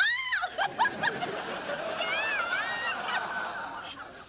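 Studio audience laughing, after a brief high-pitched vocal whoop at the start.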